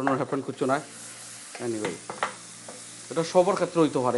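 Spiced curry sizzling in a nonstick pan while a wooden spatula stirs and scrapes through it. A man's voice comes and goes over it.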